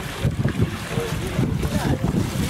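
Wind buffeting a camcorder's built-in microphone: a low, uneven rumble, with people's voices faint behind it.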